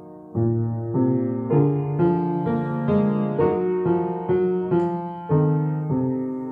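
Kawai upright piano played solo: a held chord fades out, then about half a second in a melodic phrase begins, notes struck roughly twice a second, climbing higher through the middle and falling back toward the end.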